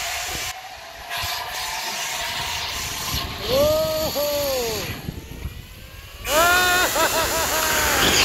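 Wind rushing past the microphone and the rumble of a zipline trolley running along its steel cable. A rider's wordless yells come over it: two drawn-out cries around the middle, then a quick run of whooping cries in the last couple of seconds.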